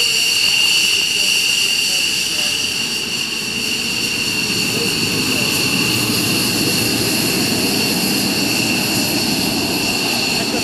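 McDonnell Douglas F-15 Eagle taxiing past at low power, its twin Pratt & Whitney F100 turbofans giving a steady high-pitched whine, with a deeper rumble that builds from about four seconds in as the jet draws alongside.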